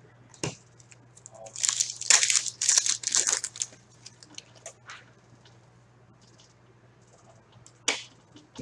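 Foil wrapper of a hockey card pack crinkling and tearing as it is opened by hand: a dense burst of crinkling about a second and a half in that lasts about two seconds. A few light ticks follow.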